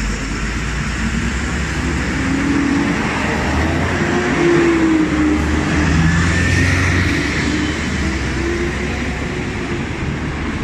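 Steady heavy road traffic with a bus's engine close by, growing louder toward the middle as it passes and then easing off. A faint rising whine comes in around the loudest moment.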